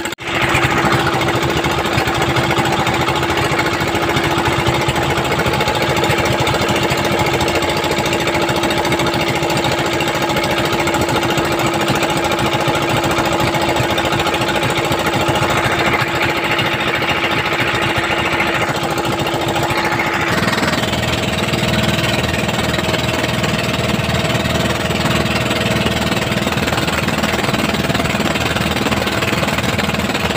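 The engine of a motorized outrigger fishing boat (bangka) running steadily under way. Its tone shifts about twenty seconds in.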